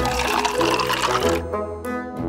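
Water running from a toy shower head into a small plastic toy bathtub, stopping about one and a half seconds in, over background music.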